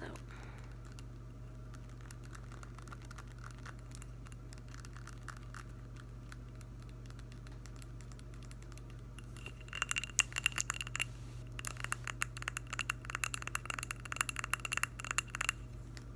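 Fingernails tapping and scratching on a glass candle jar: light, sparse clicks at first, then fast, dense tapping from about ten seconds in, with a high ring from the glass.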